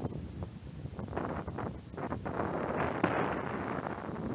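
Snow hissing and scraping under a person glissading down a snowfield on their backside. It swells over about two seconds and dies away right at the end as they come to a stop.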